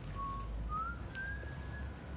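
A person whistling a slow tune: a few held notes that step and glide upward in pitch, over a low background rumble.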